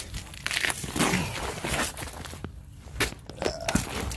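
Irregular scuffs, rustles and small knocks of a person crouching on a concrete driveway while handling a phone camera close to the ground, with a brief lull about two and a half seconds in.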